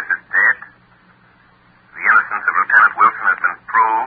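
Voices speaking dialogue in an old radio drama broadcast recording, with a gap of about a second and a half near the start and a faint steady hum beneath.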